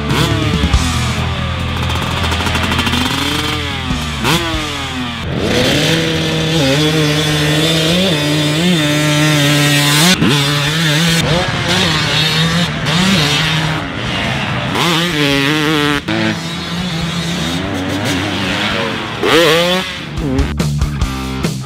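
Single-cylinder 300cc two-stroke motocross bike (Husqvarna TC300) being ridden hard, its engine note repeatedly rising as it revs and dropping as it shifts, with rock music underneath.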